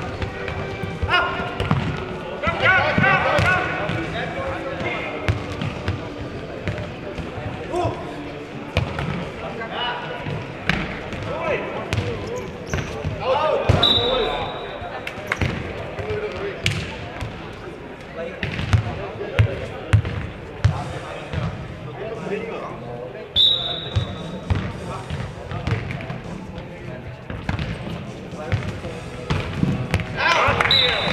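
Futnet ball repeatedly thudding off the hard court floor and off players' feet during play, with players' shouts and calls, echoing in a large sports hall.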